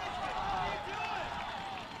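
Indistinct raised voices of people talking and calling out on an outdoor sports field, with no words clear.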